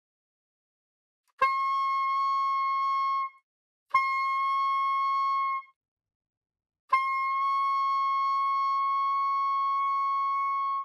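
Soprano saxophone playing its high D three times, each note held steady at the same pitch. The last note is the longest, about four seconds.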